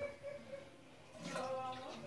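A faint, indistinct voice about a second in, with a short click at the start.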